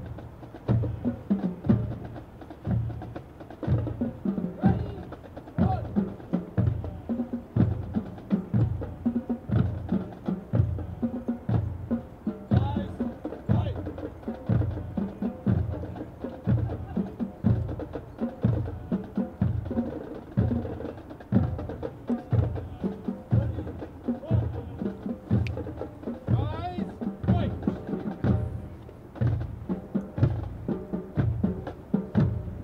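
Marching drums keeping a steady march beat for troops passing in review: a bass drum strikes about one and a half times a second, with lighter percussion between the beats.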